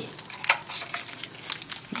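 Crinkling of a small, opened tea packet turned over in the hands, with irregular crackles.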